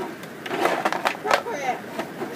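Plastic wrestling action figures knocking and clattering against each other and against the mat of a toy wrestling ring, a few sharp knocks as they are slammed down.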